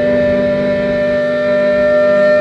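Distorted electric guitars holding one sustained chord from a live rock band, a steady, unchanging ringing drone.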